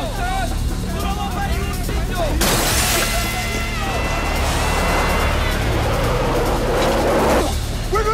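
Mixed film soundtrack of a night car chase: a car engine running under voices and music, then about two and a half seconds in a loud rushing noise with a few held tones that cuts off suddenly near the end.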